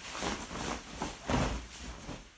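Fabric rustling in several irregular swishes as a sewn cover is flipped right side out by hand.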